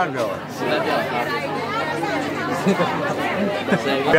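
Speech: several people talking at once, a crowd's chatter with no single clear voice.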